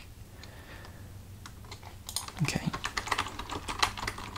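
Typing on a computer keyboard. A few scattered, faint keystrokes are followed by quick, continuous typing from about two seconds in.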